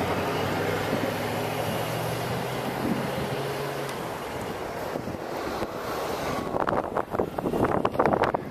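Outdoor wind and traffic noise with a low, steady engine hum that fades out about halfway through; indistinct voices start near the end.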